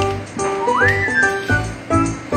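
Background music: a whistled melody over repeated notes and a low beat. About two-thirds of a second in, the whistle slides up to a held high note.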